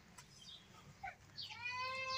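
A single drawn-out animal call, faint and steady in pitch, beginning about one and a half seconds in.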